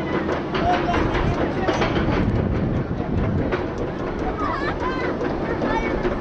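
Steel roller coaster train climbing the lift hill, its chain and wheels keeping up a steady run of rapid clicks and rattles over a low rumble, with riders' voices over it.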